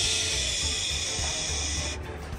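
A steady hiss like water running from a tap, starting and cutting off abruptly: a running-water sound effect for the plush dinosaur washing its hands at a dry display sink. Background music with a low pulsing beat underneath.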